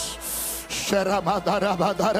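A short sharp hiss, then a man's voice through a microphone in quick, repeated syllables on a nearly steady pitch, not words the recogniser could take down.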